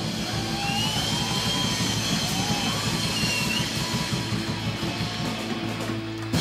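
Heavy metal band playing live: distorted electric guitars, bass and drum kit, with a high line gliding up and down in pitch over a dense beat.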